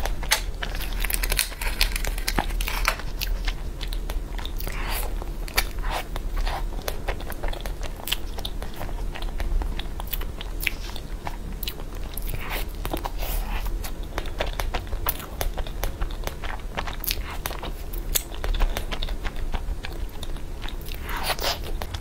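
Close-miked biting and chewing of a flour-dusted peach-shaped cake, full of small mouth clicks and smacks, over a steady low hum.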